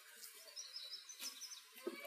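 Faint outdoor ambience with a few short, faint bird chirps about a second in.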